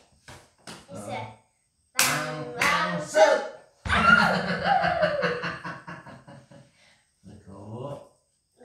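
A few quick, sharp smacks in the first second, like cards or hands slapped down, then people calling out in drawn-out, sing-song voices, one phrase gliding down in pitch.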